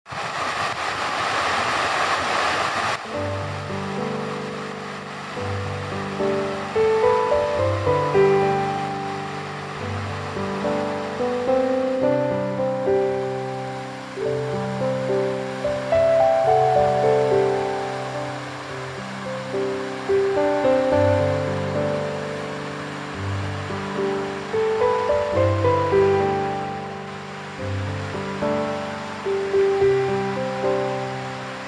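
A fountain's falling water splashing for about the first three seconds, cut off sharply as background music begins: a slow melody of sustained notes that runs on.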